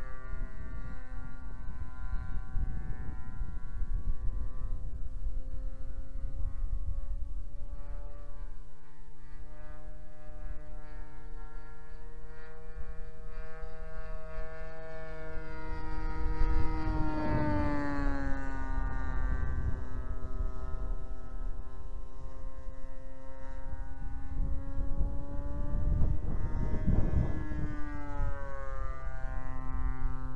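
Engine of a 2350 mm-span radio-controlled Ryan STA scale model plane in flight, a steady droning buzz. Its pitch rises and then drops as the plane passes, a little past halfway and again near the end, each pass with a rush of noise.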